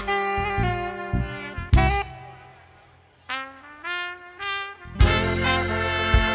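Live band with a horn section of trumpet, trombone and saxophone playing a jazzy tune in unison lines. About two seconds in, the band drops away and fades almost to nothing. Short horn phrases follow, and the full band crashes back in about five seconds in.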